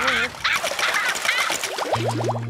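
Cartoon characters screaming and yelping in panic, several voices overlapping. Near the end comes a quick run of rising, whistle-like sound effects.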